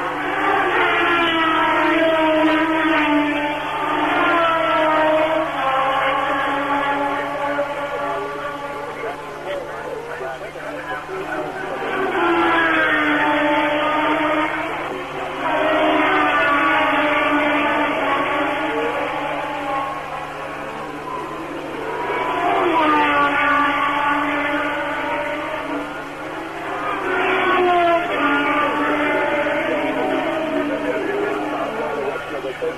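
1976 Formula One cars racing past at full speed, one after another. Each engine's note drops in pitch as the car goes by, in repeated swells several seconds apart.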